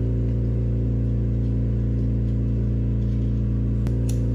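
A steady, loud low mechanical hum, like an electric motor running, with one faint click near the end.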